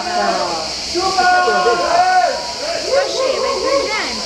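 Several people talking at once nearby, their voices overlapping, with a steady high hiss underneath.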